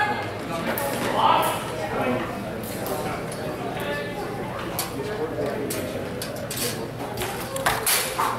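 Steel practice rapiers and daggers meeting during a bout: a scattered series of sharp clicks and clinks, with the loudest cluster near the end as an exchange lands. Voices talk underneath.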